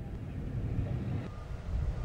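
Low, uneven rumble of outdoor background noise, with a faint steady high tone joining about halfway through.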